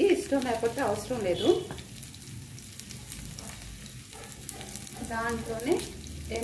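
Oil sizzling and crackling in a small steel pan as a tempering of garlic and cumin fries over a gas flame. A voice is heard over it at the start and again near the end.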